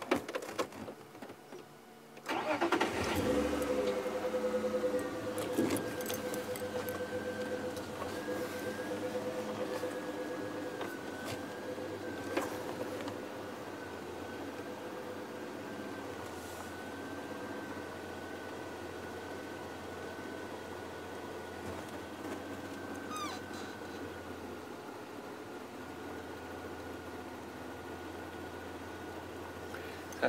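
Safari vehicle's engine starting about two seconds in, then running steadily with a thin whine as the vehicle moves slowly along a dirt track.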